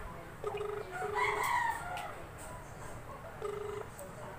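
A rooster crows about a second in, over a phone ringback tone: a low steady tone sounding in short double rings while the call waits to be answered.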